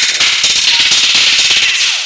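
Loud, dense crackling noise like TV static, starting to fade near the end.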